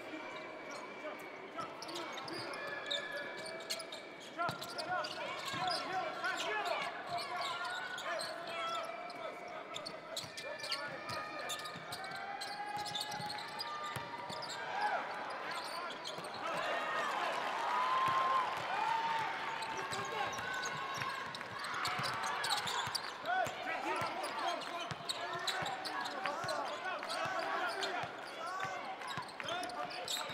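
Basketball game court sound on a hardwood floor: a ball bouncing in repeated knocks, short sneaker squeaks, and indistinct shouts from players and the bench, all echoing in a large arena.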